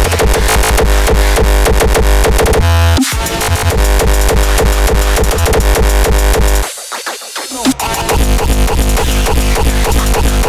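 Raw hardstyle dance music with a heavy kick drum hitting in a fast, steady run. The kick and bass drop out for about a second past the middle, then come back in.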